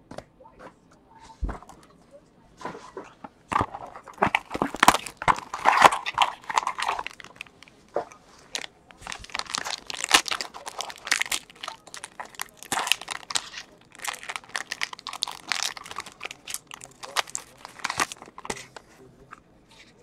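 Foil wrapper of a baseball card pack crinkling and tearing in irregular crackly bursts as it is ripped open and peeled off the cards, starting a few seconds in.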